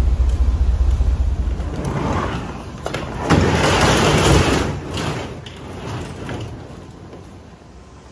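A low rumble for the first two seconds or so, then a click and about a second of loud rattling as a box truck's roll-up cargo door slides along its track. The sound then fades to a faint hiss.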